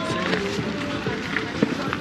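Voices of people talking close by, with music playing in the background.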